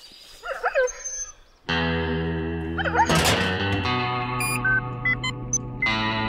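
A sustained distorted electric-guitar chord comes in suddenly about a second and a half in and holds steady. A short gliding voice sound comes just before it, and a few short high electronic beeps sound over it near the end.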